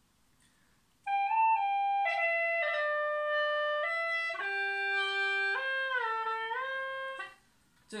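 Hulusi (Chinese gourd cucurbit flute) playing a short melodic phrase of held notes, starting about a second in and stopping near the end. The notes step up and down with quick mordent ornaments (波音) on the notes and a few smooth slides between pitches.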